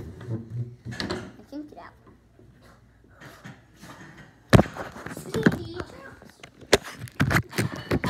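Children's voices and movement, with a sharp knock about four and a half seconds in and several more quick knocks near the end.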